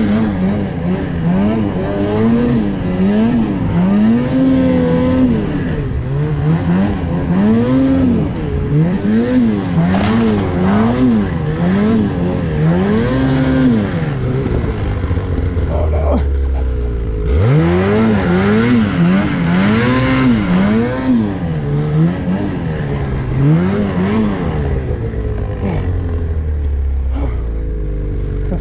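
Ski-Doo Summit 850 two-stroke snowmobile engine revving up and down over and over, about once a second or so, as the throttle is worked in deep powder. About halfway through it settles low for a few seconds, then sweeps back up and carries on rising and falling. Heard from a camera on the rider's helmet.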